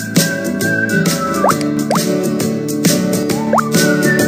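Cheerful children's cartoon background music with a steady beat, with three quick upward-sliding bloops, two in the middle and one near the end.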